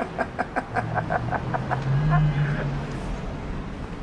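A man laughing in a quick run of short chuckles, about five a second, fading out before two seconds in. A low hum that rises slightly in pitch runs underneath in the middle.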